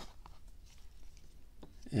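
Faint handling noise: a few light clicks and rustles as a small plastic drone is pulled out of its foam box insert.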